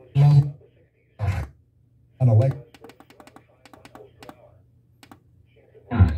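Sony micro hi-fi stereo's FM tuner being stepped from station to station by button presses: short snatches of station voices, each cut off after a fraction of a second, about once a second at first. Rapid clicking follows through the middle, over a low steady hum.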